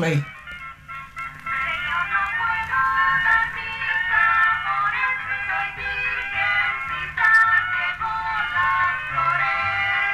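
An old record playing on a Victrola phonograph: a melody of short, steady notes with a thin, narrow sound, lacking both deep bass and high treble.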